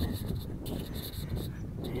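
Low rumble of wind and handling on a phone microphone during walking, with short bursts of high hiss coming and going.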